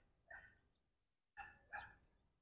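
Near silence broken by three faint, short animal calls, two of them close together near the end.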